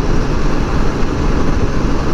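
Steady wind rush and road drone of a Honda Gold Wing GL1800 trike cruising at highway speed, with wind on the microphone.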